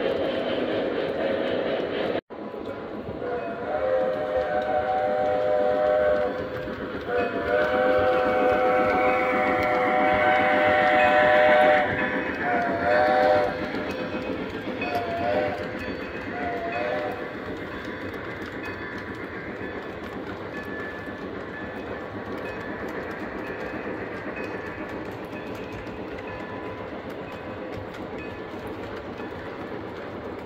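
Model steam locomotive's Lionel Legacy sound-system whistle blowing a chord: two long blasts, then a shorter one and two short toots. Underneath runs the steady rumble and clatter of model freight cars rolling over three-rail track.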